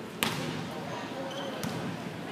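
Volleyball being struck in a large hall: a sharp smack about a quarter second in and a second, softer one near the end, over steady crowd chatter.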